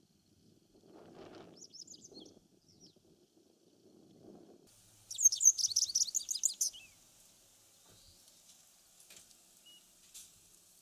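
Japanese wagtail singing: a few faint, high notes about two seconds in, then a loud run of rapid, twittering notes lasting under two seconds, starting about five seconds in.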